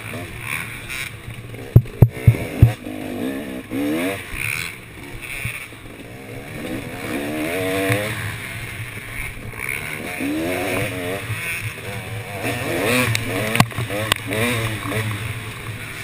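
KTM dirt bike engine revving up and down over and over as it is ridden along a rough trail, its pitch rising and falling with the throttle. There is a cluster of sharp knocks about two seconds in and another single knock near the end.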